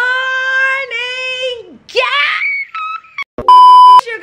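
A woman's long, high-pitched, drawn-out shout of "good morning", held for nearly two seconds, then a quick rising squeal. About three and a half seconds in, a loud steady beep tone cuts in for half a second.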